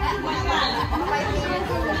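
Several people chattering at once over background music.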